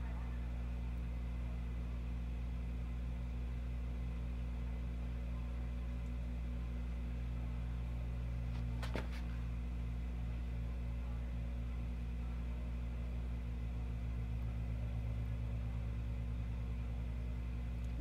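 A steady low hum, with one short click about nine seconds in.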